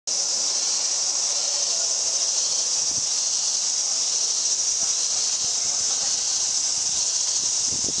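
A steady high-pitched hiss that keeps an even level throughout.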